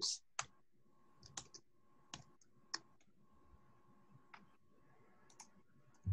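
Faint, irregular keystrokes on a computer keyboard, about ten separate clicks spread over several seconds, as a line of code is typed.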